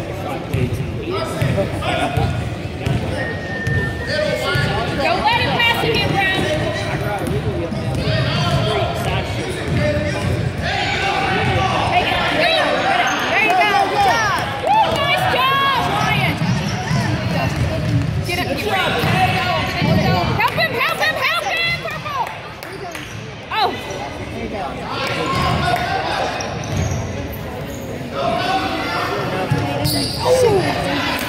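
A basketball being dribbled on a hardwood gym floor, repeated bounces through most of the stretch, with sneakers squeaking as players run and voices calling from the court and sidelines, all echoing in the gym.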